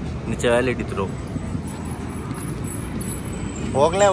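Mahindra Bolero SLX DI's diesel engine idling as a steady low rumble, with a few spoken words about half a second in and again near the end.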